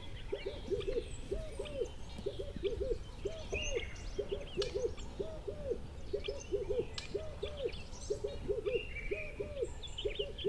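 Owl hooting: short hoots in quick runs of two or three, repeated over and over at an even pace. Smaller birds chirp and trill at a much higher pitch behind it.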